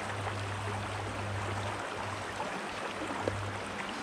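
Shallow stream riffle rushing steadily over rocks, with a low steady hum underneath that cuts out briefly about halfway through.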